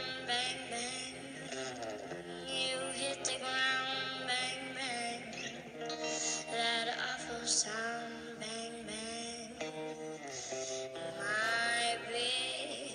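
An eight-year-old girl singing a slow ballad with vibrato, accompanied only by electric guitar.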